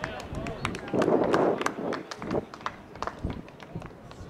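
Shouting voices from players and sideline on an outdoor soccer field, loudest in the first two seconds, with a scatter of sharp clicks and taps throughout.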